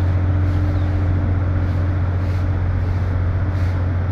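A steady low mechanical hum under a constant hiss.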